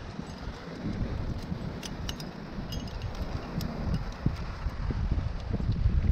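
Metal trad climbing gear (carabiners, nuts and cams on the harness rack) clinking in scattered light clicks as protection is handled and placed, with wind rumbling on the microphone.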